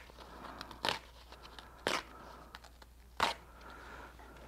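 Tear-away stabilizer being ripped by hand off the back of stitched fabric: three short tears about a second apart.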